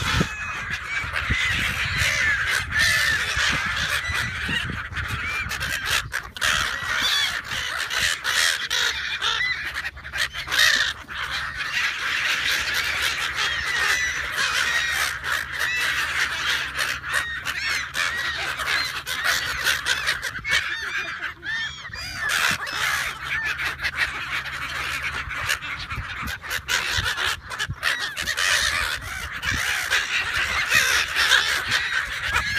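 A large flock of brown-headed gulls calling continuously close by, a dense, unbroken chorus of harsh squawks.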